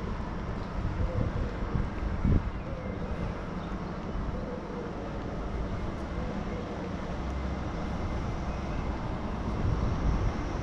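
Outdoor street ambience: a steady low rumble with a faint wavering hum, and a brief louder thump about two and a half seconds in.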